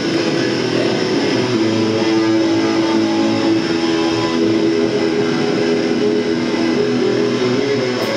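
Live punk rock band: electric guitars strumming and letting long chords ring, with no singing.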